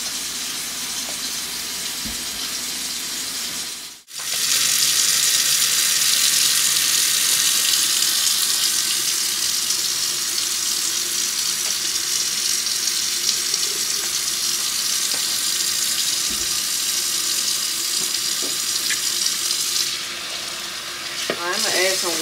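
Kitchen faucet running a steady stream into a stainless sink. The water starts abruptly about four seconds in and runs until near the end, where it eases off. Before it, a softer steady hiss.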